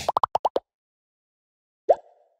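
Cartoon pop sound effects for an animated logo: a quick run of five short pops in the first half second, then a single pop rising in pitch near the end.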